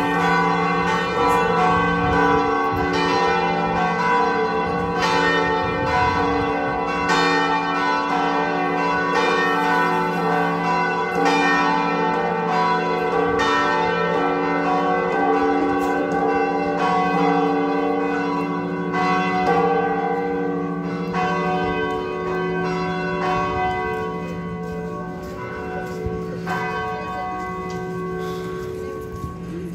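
Cathedral carillon bells ringing a festive peal (repique), many bells overlapping and ringing on, with new strikes about once a second. The peal grows somewhat quieter over the last few seconds.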